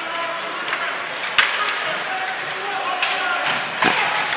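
Ice hockey arena during play: a steady murmur of crowd chatter, with a sharp crack of stick on puck about a second and a half in and a smaller knock just before the end.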